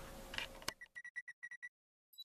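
A click, then a quick run of about eight short, high electronic ticks in under a second: a sound effect for animated end-card text building on screen.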